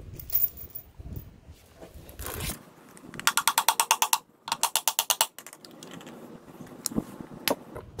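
A hand ratchet clicking rapidly in two short runs, about a second each, while a bolt on a motorcycle engine's stator cover is backed out, with a few light metal knocks and handling noise around them.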